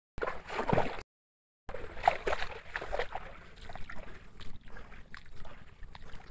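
Footsteps crunching irregularly on wet gravel and mud, with the water-like squelch of a muddy riverbank. The sound drops out completely for about half a second about a second in.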